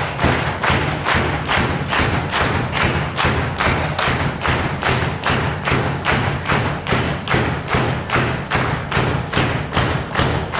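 Steady rhythmic thumping, about three sharp beats a second, over a low sustained hum.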